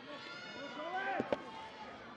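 Scattered voices shouting and calling out, with one loud whoop that rises and falls about a second in, followed by a single sharp clap or knock.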